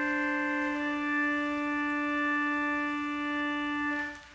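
Organ holding a sustained chord over a steady low note, the upper notes shifting once or twice without any decay, then releasing at the very end.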